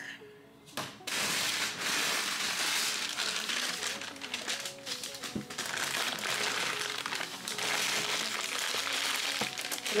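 Packing material crinkling and rustling steadily as it is handled, starting about a second in, over quiet background music.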